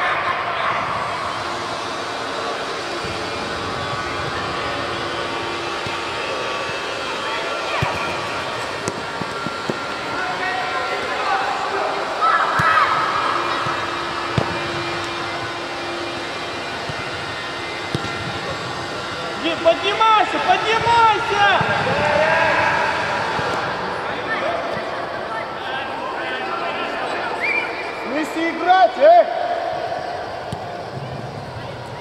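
Players and spectators shouting and calling across a large, echoing indoor football hall over a steady hubbub of voices, with louder bursts of shouting about two-thirds of the way in and again near the end.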